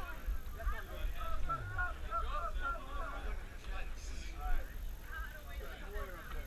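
Indistinct chatter of several people talking at once, with a steady low wind rumble on the microphone underneath.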